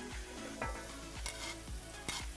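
Sliced leeks tipped into hot olive oil and butter in a pan, sizzling softly, with a knife scraping them off a stone board. A soft steady music beat runs underneath.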